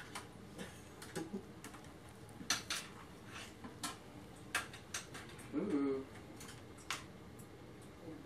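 Irregular light clicks and taps, about a dozen scattered over several seconds, from hands working a computer keyboard and mouse.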